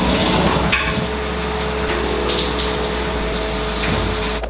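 Shower running: a steady hiss of spraying water, with soft background music underneath.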